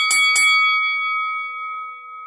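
A bell-like chime sound effect: three quick strikes in the first half-second, then one ringing tone that slowly fades.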